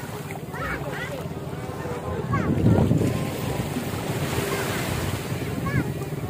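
Small waves washing on a sandy beach, with wind buffeting the microphone and a louder rush of wind and surf about halfway through.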